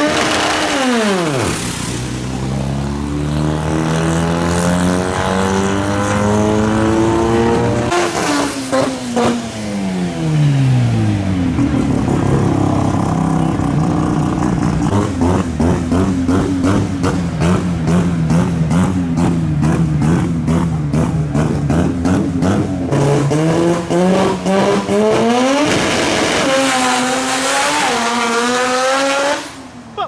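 Mazda RX-7's 13B two-rotor rotary engine at a drag strip: held at high revs in a rising climb during a burnout in the first several seconds, then a choppy, pulsing idle with blips while staging. In the last few seconds it launches and accelerates hard with rising pitch, cutting off suddenly near the end.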